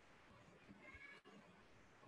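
Near silence: faint room tone from an open microphone, with a brief faint high tone about a second in.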